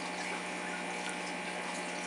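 Aquarium filtration running: a steady wash of moving water with a low, even hum under it.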